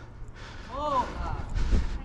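A player's brief shout on the pitch, one short call rising and falling in pitch about a second in, over a low rumble.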